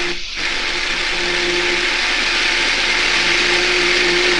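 Small personal blender running steadily, blending spinach and fruit in coconut water into a green smoothie.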